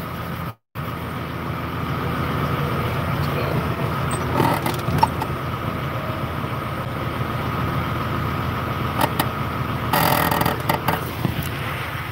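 Semi-truck diesel engine idling steadily, with a few clicks and a short burst of noise about ten seconds in.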